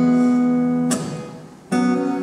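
Two acoustic guitars strum a chord that rings out, is cut short just before a second in and dies away, then a new chord is strummed near the end.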